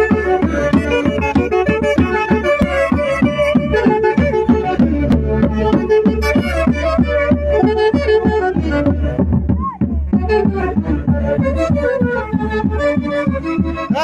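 Live Santiago festival band music: saxophones playing the melody over a steady beat on a large bass drum.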